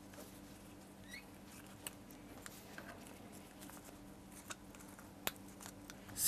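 Faint handling sounds of a rubber balloon being stretched over the mouth of a plastic funnel: light scratching and rubbing with a few sharp small ticks, the loudest about five seconds in, over a faint steady hum.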